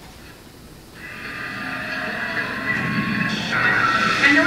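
A quiet room for about a second, then the opening music of a video played over the lecture hall's loudspeakers starts and grows louder.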